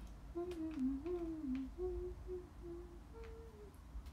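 A young woman's closed-mouth "mm-hm, mm-hm" hums while eating, a string of short hummed syllables rising and falling over about three seconds, with a few faint light clicks.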